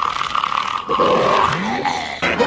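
Cartoon villain King Piccolo straining with a rough, drawn-out vocal cry as he spits out an egg. A steady high tone runs under the first second and a half.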